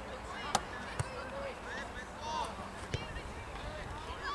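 Short shouts and calls from players across an outdoor football pitch, with three sharp kicks of the ball: about half a second in, at one second, and near three seconds.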